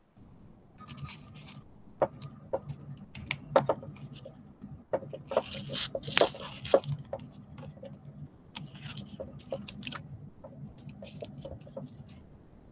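Masking tape being wrapped around a wire and aluminum-foil armature by hand at close range: crackling, rustling and small sharp clicks, with a louder, denser stretch of rustling about five to seven seconds in. A faint low hum runs underneath.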